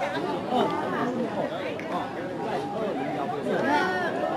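Several people talking at once, their voices overlapping in steady chatter with no single voice clear.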